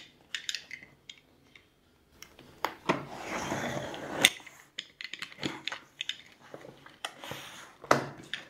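A utility knife slicing through the packing tape on a cardboard box, a drawn-out cutting noise about three seconds in that ends in a sharp click. Around it come scattered light clicks, taps and rustles of the knife and the cardboard being handled.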